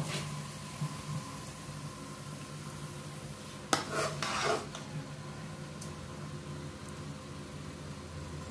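A steady low background hum, broken about halfway by a sharp clink of crockery and about a second of scraping rattle.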